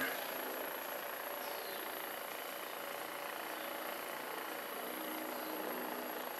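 Hypervolt percussion massage gun running steadily with a low, even motor hum while its head is pressed against a leg around the kneecap.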